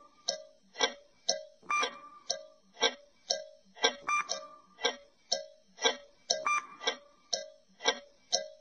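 Ticking-clock sound effect marking a quiz countdown timer: an even tick-tock of about two ticks a second.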